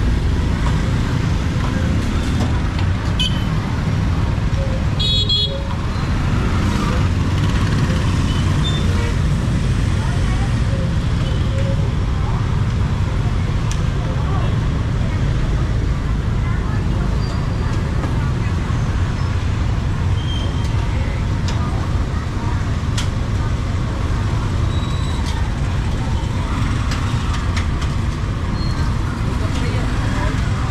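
Busy street-market ambience: steady motorbike and traffic noise with indistinct voices, and a short horn toot about five seconds in.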